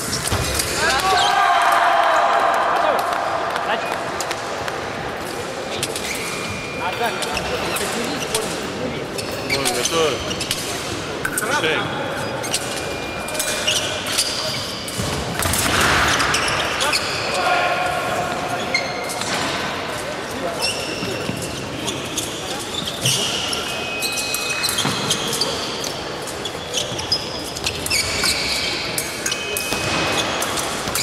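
Fencers' footwork on a piste over a wooden sports-hall floor: repeated thuds, knocks and shoe squeaks, with a louder flurry about halfway through as the two fencers close in to body contact.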